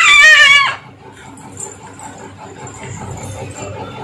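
A toddler's loud, high-pitched drawn-out vocalization that breaks off abruptly under a second in, followed by faint low sounds.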